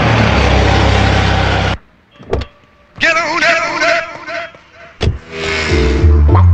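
A car driving by: steady engine and road noise that cuts off abruptly about two seconds in. Later there is a single sharp knock.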